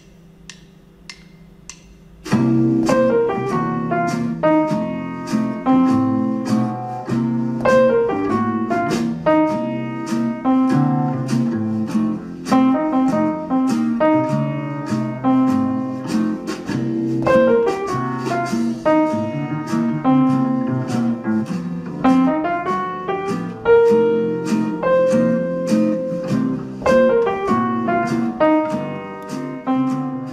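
Piano playing a repeating swing-rhythm motif on the blues scale over a blues-jazz backing track in swung triplet eighths. A few faint ticks come first, and the backing and piano come in about two seconds in.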